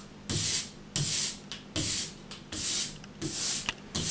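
Ink brayer rolled back and forth through printing ink on a glass inking slab: five hissing strokes, each about half a second long, roughly one every three-quarters of a second. The ink is being spread out evenly on the slab before it goes onto the block.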